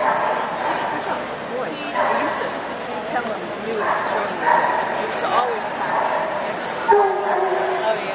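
A dog yipping and barking over the indistinct chatter of people.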